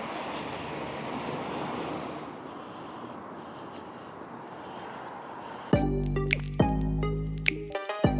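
An even hiss of street and traffic noise, then background music that starts suddenly almost six seconds in, with a steady bass and sharp, evenly spaced plucked or struck notes.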